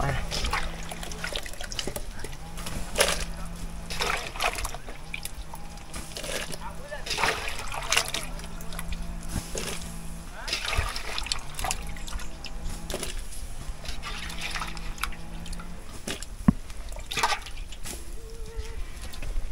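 Handfuls of sliced green banana splashing into a large pot of boiling water, one splash every second or two, over the boil's bubbling.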